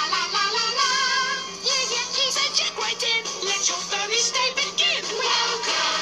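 Puppet characters singing a bouncy ensemble song over a band backing, played from a television and picked up off its speaker in the room, with a steady low hum underneath.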